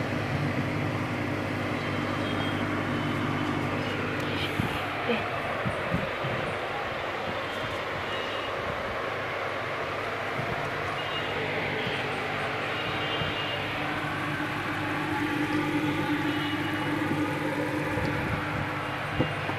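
Steady hum and rushing noise of running aquarium equipment with the water churning, a few faint knocks about four to six seconds in.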